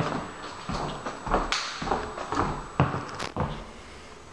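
Footsteps on a wood laminate floor in an empty room, a series of short knocks and thuds about half a second apart.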